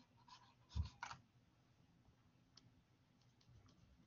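Faint taps and scratches of a stylus on a tablet screen while handwriting is erased on a digital whiteboard. A single duller thump just under a second in is the loudest sound, followed by a few light ticks.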